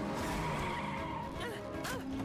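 Cartoon sound effects of a speeding car skidding with tyre squeal, mixed with a music score; a short thump near the end.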